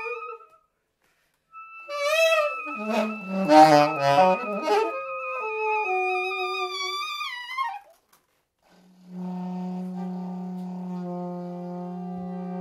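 Soprano and alto saxophones improvising together: after a brief pause, overlapping held notes with a dense cluster of notes in the middle, which slide downward and stop about eight seconds in. After a short gap a low note starts and is held steadily under a higher tone.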